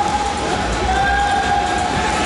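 Spectators cheering in an indoor swimming hall: a steady, loud din with long held, horn-like tones over it.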